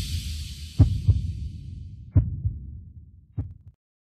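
Heartbeat sound effect: paired low thumps over a low rumble, about one beat every second and a half, with a high shimmering whoosh fading out in the first two seconds. It stops shortly before the end.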